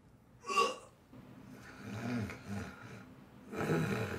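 A man's sharp, hiccup-like gasp about half a second in, then low throaty vocal sounds and another loud breathy outburst near the end.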